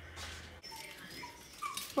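A dog whimpering softly: a few short, faint high whines, the last a little louder and rising.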